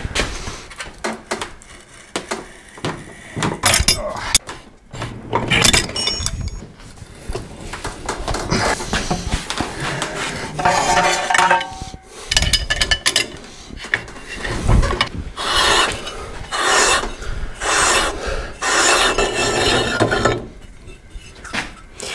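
Hand tools working a steel part clamped in a bench vise: irregular scraping and rubbing of metal on metal with clinks and knocks, the scraping strokes coming about once a second in the second half.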